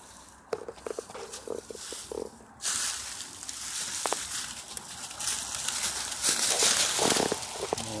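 Dry leaf litter and brush rustling and crackling underfoot as someone walks through the underbrush. A few light snaps at first, then steady crunching rustle from about two and a half seconds in.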